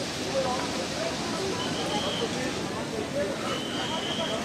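Steady rushing of a fast mountain river, the Alakananda, with faint distant voices. A short high tone sounds twice, once partway through and once near the end.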